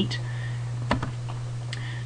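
A computer mouse clicked once, sharply, about a second in, with a fainter tick near the end, over a steady low electrical hum.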